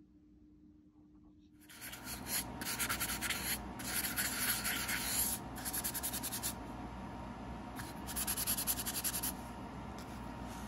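Hand sanding of a cast eco resin (ResinCrete) terrazzo candle holder: rapid rasping strokes of abrasive across the hard cast surface. The strokes begin about two seconds in and come in runs separated by brief pauses, easing off near the end.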